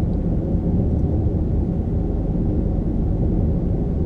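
Steady low rumble of a car driving along a road, engine and tyre noise heard from inside the cabin.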